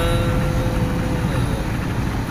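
Steady low rumble of engine and road noise inside a moving vehicle's cabin.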